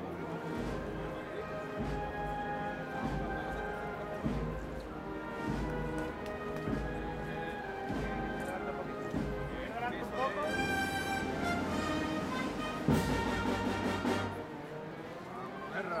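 Processional band playing a slow march: sustained wind chords over a regular low drum beat, with a loud crash about thirteen seconds in.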